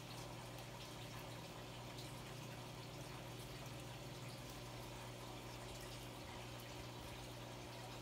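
Aquarium filters running: a steady trickle of water with faint drips over a constant low hum.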